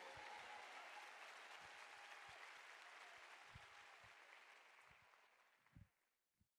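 Faint applause from a large audience, an even patter of many hands that fades away and dies out just before the end.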